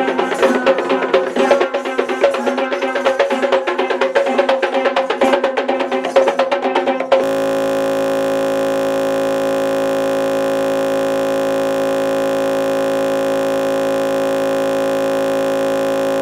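Kandyan drums (geta bera) played in a fast, dense rhythm over a steady held note. About seven seconds in the drumming cuts off abruptly and a flat, unbroken buzzing tone holds at one level until the end.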